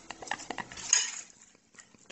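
Metal fork clicking and scraping on a ceramic plate, a few light clicks with a louder scrape about a second in.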